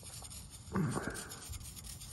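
Small metal palette knife scratching short score marks into packed sand: light, repeated scratches, roughening the surface so that pinched-on wet sand will stick. A short louder sound comes just under a second in.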